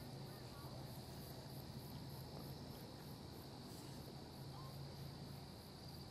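A faint, steady high-pitched drone over a low hum, unchanging throughout, with no other events.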